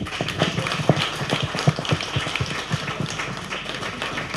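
Audience applauding: many hands clapping in a dense, steady patter.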